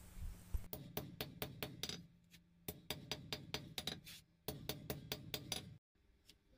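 A blacksmith's hammer striking a steel bar on an anvil in quick runs of blows, about four or five a second, with short pauses between runs, while the bottle-opener handle is squared up. The sound cuts off abruptly near the end.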